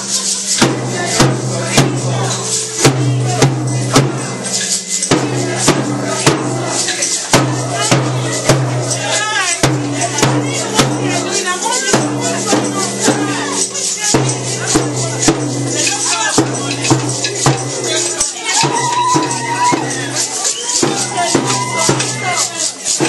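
A marching protest crowd making noise: handheld rattles and shakers clattering and beating a rhythm of about two or three sharp strokes a second, over a steady low droning tone that breaks off every few seconds, with voices shouting and calling.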